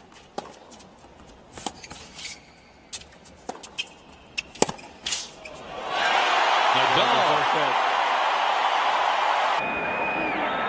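A tennis rally: a string of sharp pops as racquets strike the ball, then about six seconds in a stadium crowd bursts into loud cheering and applause as the point ends; the cheering cuts off near the end.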